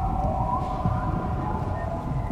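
Eerie sound-design effect: several long held tones that waver and slide slightly in pitch, like a distant wail, over a steady low rumble.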